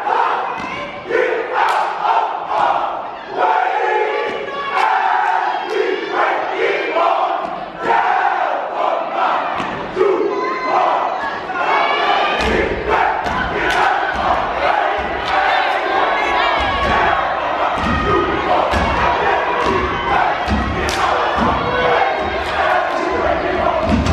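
Step team performing: loud shouted voices and crowd yelling over sharp stomps and claps. About halfway through, heavy deep stomps start coming in quick succession.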